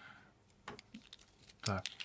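A few light, scattered clicks and taps from a cheap plastic-and-metal mini tripod being turned and handled in the hands.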